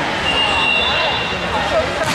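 Indistinct chatter of many voices echoing in a large gymnasium. A thin, steady high-pitched tone is held for about a second near the start.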